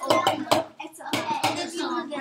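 Children's voices talking, with a few sharp knocks and taps.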